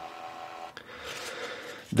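Thermal paper printout torn off against a small printer's plastic serrated cutter: a click, then a dry rasping rip lasting about a second.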